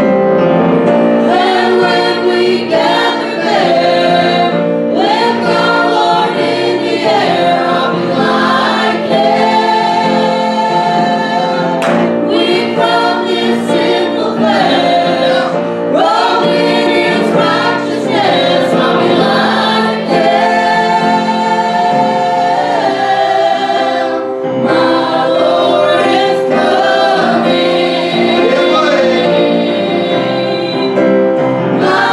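A church youth choir singing a gospel song together, mostly young female voices.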